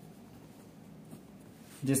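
Pen writing on paper: faint scratching strokes.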